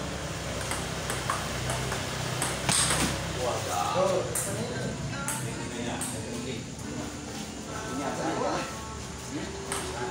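Celluloid table tennis ball clicking sharply off the bats and the table in a rally, a scattering of single knocks, with people's voices in the background.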